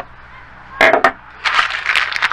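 A clear plastic zip-lock bag of small pressure-washer parts being picked up and handled, crinkling in quick rustles through the second half. A short, louder rustle or knock comes just under a second in.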